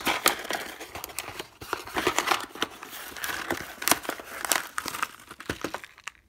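Cardboard box being opened by hand, with the brown paper bag inside rustling and crinkling as it is handled, in a dense run of sharp crackles and snaps.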